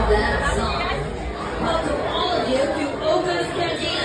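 Crowd chatter: many people talking at once in a busy, echoing bar room, with no single voice standing out.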